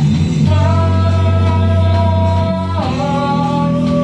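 A rock band playing live in a small room: distorted electric guitar and bass hold a sustained chord, moving to another chord about three quarters of the way through.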